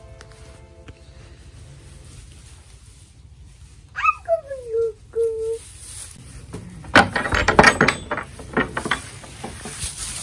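A baby goat bleats about four seconds in: one call falling in pitch, then a short level note. About seven seconds in comes a flurry of sharp knocks and rustles.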